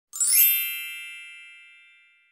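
Bright chime sound effect for an intro logo reveal: a quick sparkling shimmer up into one ringing ding, fading away over about two seconds.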